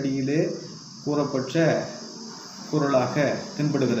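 A man speaking Tamil in three short phrases with brief pauses, over a steady high-pitched hiss that runs throughout.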